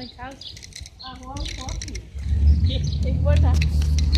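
Faint voices at first, then from about two seconds in a loud low rumble of fingers handling and rubbing over the phone's microphone.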